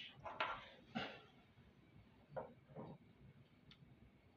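Mostly quiet room tone with a few faint, brief knocks and rustles of hand handling, the loudest about a second in.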